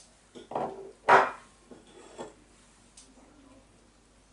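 A few short, light clinks and knocks of kitchen utensils on a ceramic bowl while the pasta is being garnished; the loudest comes about a second in.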